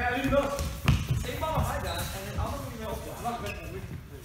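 Teenagers' voices calling out during play, with a single sharp thud of a foam ball about a second in.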